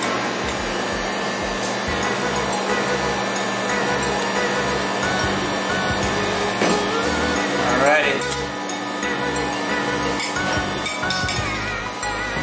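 Steady whirring hum of a rolled-ice-cream cold plate's refrigeration unit under background music. There are a few light metallic clinks, metal spatulas on the steel pan, late on.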